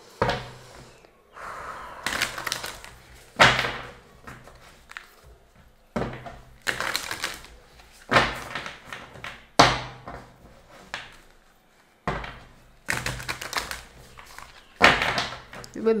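A deck of tarot cards being shuffled and handled close to the microphone: a series of sharp papery slaps and riffles, roughly every one to two seconds.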